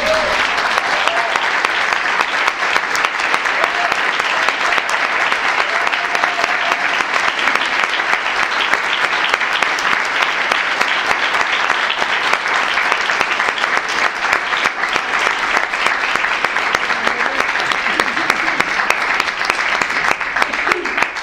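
Audience breaking into applause all at once and keeping up dense, steady clapping, with a voice or two faintly among it.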